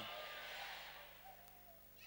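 The echo of a man's shouted preaching dies away in a large hall over about a second. A quiet room follows, with faint voices in the background.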